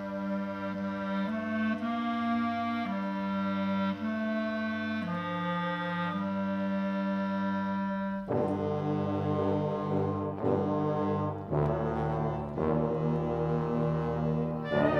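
Brass-led band music: long held chords whose low notes step up and down about once a second, then from about eight seconds in fuller, shorter chords in a driving rhythm.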